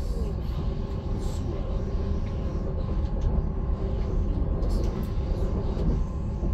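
Passenger train running at speed, heard from inside the carriage: a steady low rumble with a faint, even tone above it.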